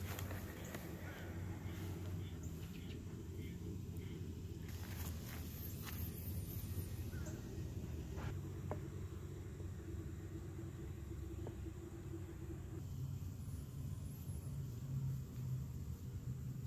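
Quiet outdoor ambience: a steady low rumble with a few faint clicks and rustles, and faint high chirps about five seconds in and again near the end.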